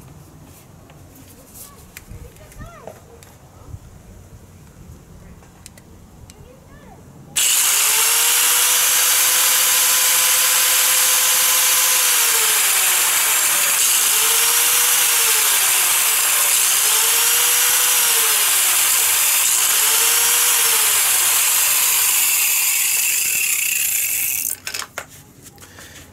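Electric angle grinder switched on about seven seconds in and running free with no load on the disc, its motor whine dipping and recovering in pitch several times. It is switched off near the end and spins down briefly.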